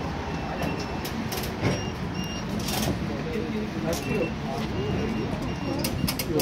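Turnstile card readers giving short, flat electronic beeps, two pairs of them about two seconds and five seconds in, with a few sharp clacks, over a steady background rumble.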